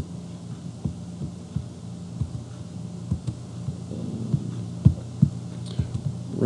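Steady low electrical hum, with scattered light clicks and knocks at irregular intervals.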